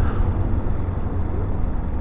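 Yamaha Fazer 250 motorcycle running steadily on the road, its single-cylinder engine giving an even low rumble mixed with road noise.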